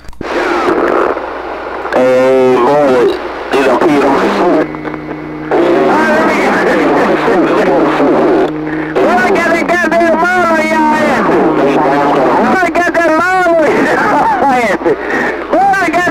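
CB radio receiving a strong signal: garbled, warbling voices from the speaker, with steady low tones running under them from about four seconds in until past twelve seconds.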